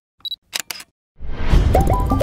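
Three short, sharp clicks in quick succession, then a brief silence, then a swelling sound effect with quick falling tones that builds into a closing music sting.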